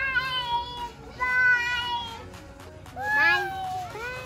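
A young child's high, drawn-out calls, three of them, each bending in pitch, over background music.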